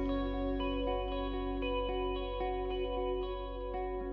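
Live rock band playing a quiet instrumental passage: picked guitar arpeggios with a chorus-like shimmer, new notes about every half second, over a steady held low note.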